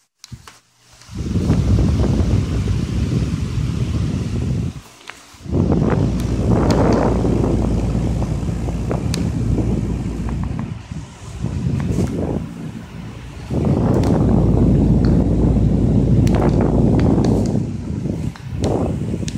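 Loud low rumbling noise on the microphone that comes and goes in long gusts, with a few sharp clicks. It drops away briefly about five seconds in and again around twelve seconds.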